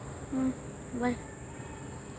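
Night insects trilling, one steady high-pitched tone throughout. A man's voice says 'bye' twice in short syllables.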